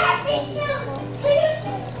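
Voices: adults and a child talking and cooing close by.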